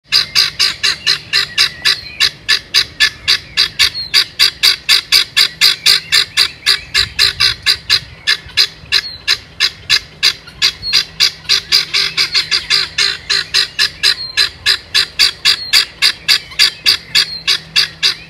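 Male helmeted guineafowl calling: a rapid, unbroken string of short, harsh, identical calls, about four or five a second. It is the call a guinea cock gives when a hen nearby is laying.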